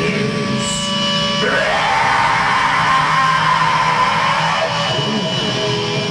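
Black metal band playing live: distorted electric guitars holding sustained notes. From about a second and a half in, a long harsh shriek of about three seconds rises over them.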